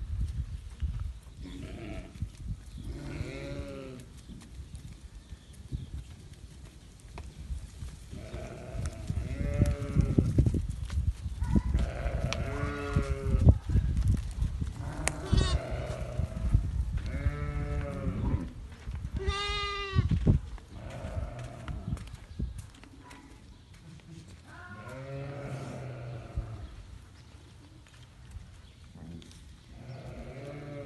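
Najdi sheep, ewes and lambs, bleating many times, some calls low and some much higher. About twenty seconds in there is one long, high bleat that wavers in pitch. In the middle stretch the bleating runs over a low rumble.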